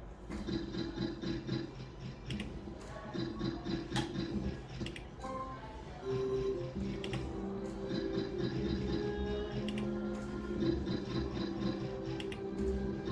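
Novoline video slot machine's electronic game music during its free spins. Over the steady tune run quick repeated ticks as the reels spin and stop, and a longer held tone comes in about halfway through.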